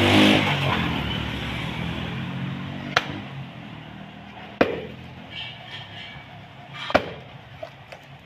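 Machete chopping into a large green coconut on a wooden block: three sharp strikes, about three, four and a half and seven seconds in. A motor vehicle's engine is loud at the start and fades away over the first two seconds.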